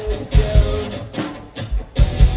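Live rock band playing, with distorted electric guitars and a drum kit. There is no singing, and the low drum and bass hits are the loudest part.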